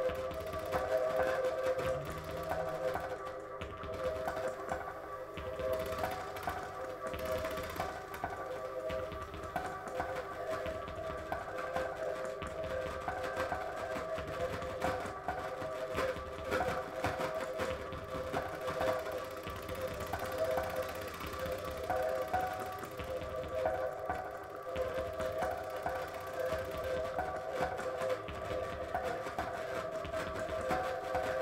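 Experimental electronic music on vintage synthesisers: a sustained drone of several held tones, with an uneven pulsing in the low end underneath.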